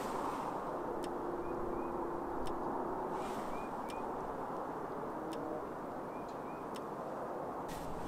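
Steady, faint outdoor background noise, with a faint steady tone from about one to three and a half seconds in and a few faint chirps and ticks. No hum of bees comes from the opened nuc hive: its colony has died over the winter.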